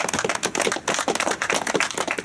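A small group of people applauding: many separate hand claps in a dense, uneven patter.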